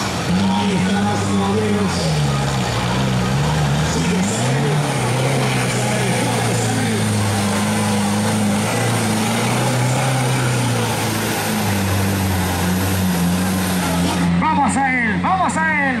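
Four-cylinder off-road 4x4 truck engine revving under load through deep mud, its pitch rising and falling again and again as the throttle is worked.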